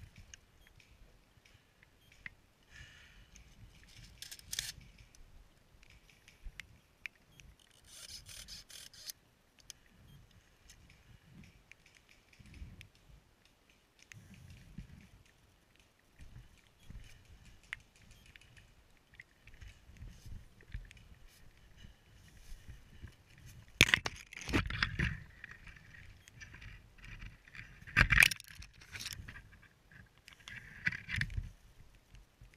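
Rustling, scraping and light rattling of a player's clothing and gear close to the camera, with faint crackles. Two sharp, louder knocks come near the end, a few seconds apart.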